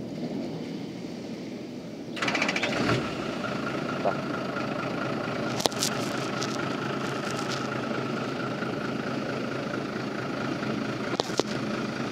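Diesel engine of a cab-over box truck cranked and catching about two seconds in, then running steadily at idle with a thin, steady high tone over it.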